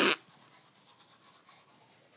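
A short, breathy huff of air right at the start, then near silence: room tone.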